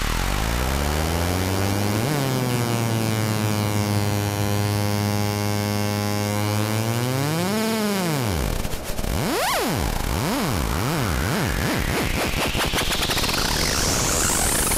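Hardstyle intro on synthesizers: a pitched synth note with many overtones slides up, holds steady, then bends up and drops away about eight seconds in. Quick up-and-down pitch swoops follow, while a noise riser climbs steadily higher toward the end.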